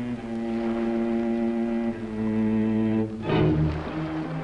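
Cello bowing long held notes from a film score. The note changes about halfway through, then a louder, rougher low sound comes in a little past three seconds.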